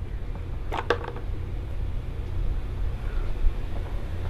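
A steady low hum, with two light taps about a second in as a rigid cardboard phone box is handled and its lid lifted off.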